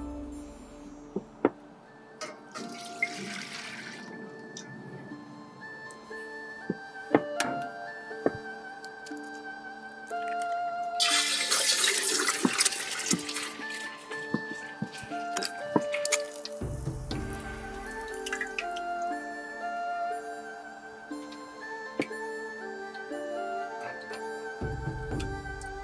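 An egg sizzling and spitting loudly in a deep layer of hot oil in a wok as it is cracked in, for a crispy fried egg; the sizzle starts about 11 seconds in and lasts about five seconds. Background music plays throughout.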